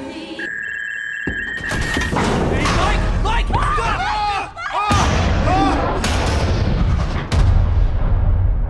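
Film sound effects of a room tipping over: a steady high electronic tone, then a crash and a heavy low rumble with people screaming and shouting. Loud booming hits break in about five seconds in and again near the end, the last one the loudest.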